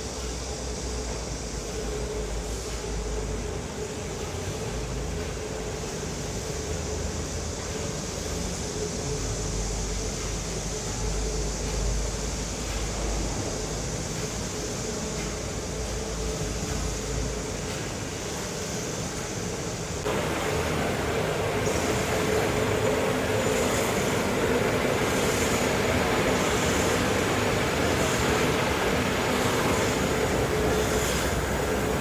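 Steady machinery noise of a running hardboard (greyboard) production line, with a constant hum under it. It gets louder and hissier about two-thirds of the way through.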